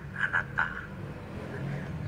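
A man speaking Thai for a moment, then a steady low hum with no other clear sound while the sewing machine stays off.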